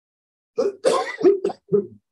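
A person coughing: a run of about five short coughs starting about half a second in.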